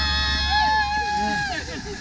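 Women cheering with long, high, held whoops that overlap and slide down in pitch as they end, dying away about a second and a half in.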